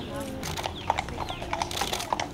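Horse's hooves clopping on a paved road, a few irregular clops, over the voices of children and adults.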